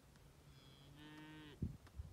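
A Longhorn cow or bull gives one faint moo, about a second long and steady in pitch, ending around the middle; a soft low knock follows.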